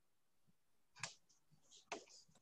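Near silence broken by two faint, short clicks, one about a second in and one near the end.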